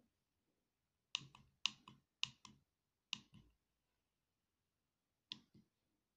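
Push buttons on an RF Explorer handheld spectrum analyzer's keypad clicking as they are pressed and released, each press a quick double click. There are four presses in quick succession early on and one more near the end.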